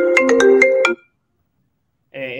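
A phone ringtone: a quick melody of chiming, sharply struck notes that cuts off abruptly about a second in, followed by silence.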